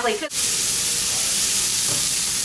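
Water poured into a very hot pan of oil and garlic, hissing and sizzling loudly as it flashes to steam. The hiss starts suddenly just after the start and then holds steady.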